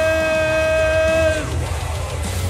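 A ring announcer drawing out a fighter's surname into one long held call on a steady pitch, cutting off about a second and a half in, over low crowd noise.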